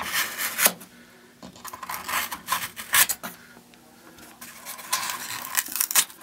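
Short scraping strokes of a hand tool carving back foam scenery, coming in a few quick clusters with pauses between.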